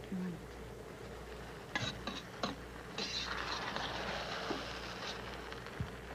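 A few light metallic clinks from a stainless steel cooking pot and its lid, then a soft hiss for about two and a half seconds from the pot of rice simmering and steaming.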